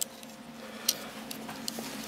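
Light handling noise from a digital caliper being moved about over newspaper: a few small clicks, the clearest about a second in, over a faint steady hum.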